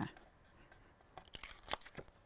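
Paper rubbed down on a clear rubber stamp and peeled off it: faint, with a few short crinkling rustles in the second half.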